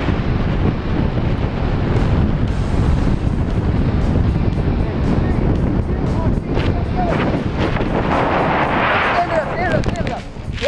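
Heavy wind buffeting on a skydiver's handcam microphone under a parachute canopy as it comes in to land, with faint music carrying a steady tick about three times a second and a few brief voice sounds in the second half.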